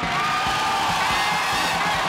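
Live studio band playing upbeat music with a steady beat and a held note, over a studio audience cheering and applauding.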